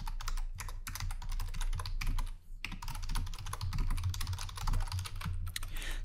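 Rapid typing on a computer keyboard, a quick run of keystrokes with a brief pause a little over two seconds in.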